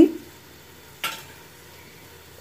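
A single short clink of kitchenware about a second in, over a faint steady hiss.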